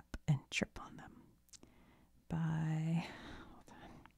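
A woman's soft, near-whispered voice, with a drawn-out syllable on one steady pitch about two and a half seconds in.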